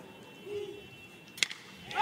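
A single sharp crack of a metal baseball bat hitting a pitched ball, about one and a half seconds in, over quiet ballpark background: a slap hit to left field.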